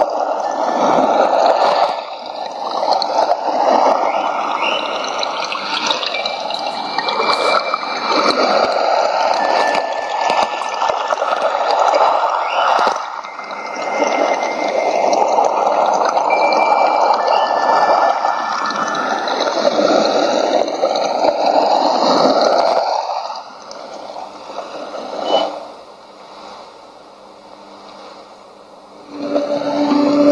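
Rushing-water nature sound from a radio programme, heard through a shortwave receiver, with shortwave fading sweeping through it. It dips about 23 seconds in and falls to a faint hiss for the last few seconds before the announcer's voice returns.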